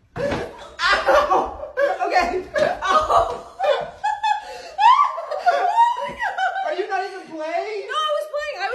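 People laughing loudly, in quick choppy bursts at first and then in drawn-out gliding squeals and cries over the second half.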